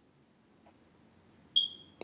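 Near silence, then about one and a half seconds in a single short, high-pitched electronic beep that holds one steady pitch and fades slightly.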